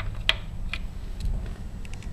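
Light clicks and taps of a brass rifle case being picked out of a plastic loading block and handled against a digital caliper, about five scattered clicks over a low steady hum.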